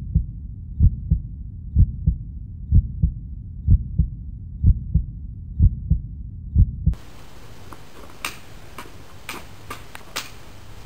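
A heartbeat sound effect: pairs of low thumps about once a second, which cut off suddenly about seven seconds in. After that, a few sharp clacks of sticks striking each other.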